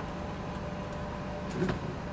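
Steady low hum of a Nissan Qashqai's 2.0 petrol engine idling, heard inside the car's cabin, with a faint thin steady tone above it.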